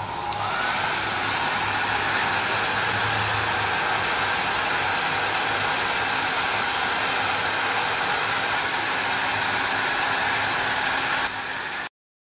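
Hand-held hair dryer running, blowing air into the inlet of a small digital turbine flow meter. Its motor whine rises in pitch over the first second as it spins up, then holds as a steady rush of air. The sound stops abruptly near the end.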